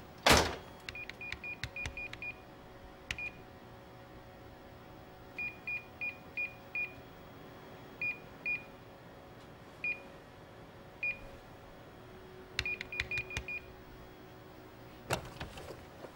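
A thump just after the start, then buttons pressed on an electronic keypad, each press a short high beep with a click: quick runs of five or six presses and single presses between them. A faint steady hum underneath.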